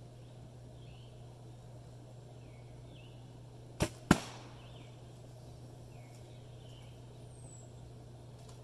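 A traditional bow shot: the bowstring's release snap, then about a third of a second later a louder sharp crack as the arrow hits and pops a balloon on the target. Faint bird chirps can be heard now and then.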